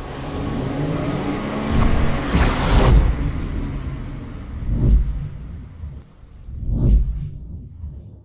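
Produced outro sound design over music: a car engine revving up with rising pitch and a loud rush of noise, then two deep whooshing booms about two seconds apart.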